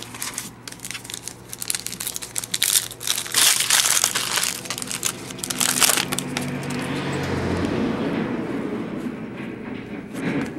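Plastic trading-card pack wrapper crinkling and tearing as a pack is ripped open, loudest around the middle, then easing into a softer rustle near the end.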